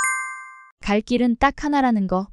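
A bright chime sound effect: a single ding of several ringing tones that fades out within about a second, marking the new title card.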